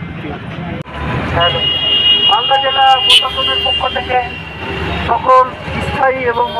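A man's voice calling out through a handheld megaphone over steady street traffic, with a thin high whine under it for about two seconds early on.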